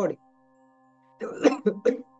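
A man's cough, a little over a second in: one rough burst followed by two short ones, over a faint steady hum.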